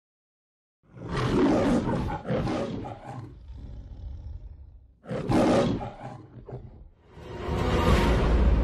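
Cartoon Tyrannosaurus roaring twice: a long roar about a second in, then a shorter one about five seconds in. A low swelling sound builds near the end.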